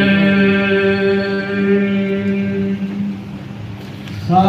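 Unaccompanied noha, a Shia lament, sung by a man through a microphone: one long note held steady, trailing off about three seconds in.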